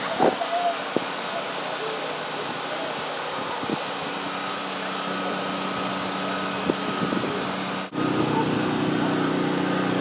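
Outdoor ambience with a steady low engine-like hum that comes in about four seconds in. The hum grows louder after a brief dropout near eight seconds.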